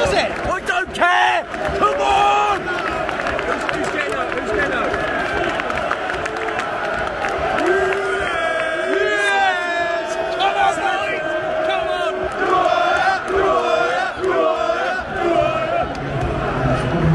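Football crowd of supporters singing and chanting together in the stand, many voices at once, with sharp shouts in the first couple of seconds and a sustained group song from about halfway through.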